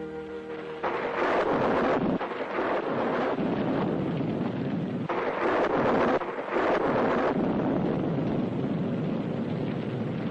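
Storm sound effect of heavy rain and wind, rising and falling in surges. It takes over from a held music chord about a second in.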